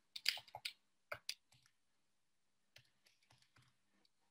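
Soft key clicks, like typing on a keyboard: about half a dozen quick taps in the first second and a half, then a few fainter ones near the end.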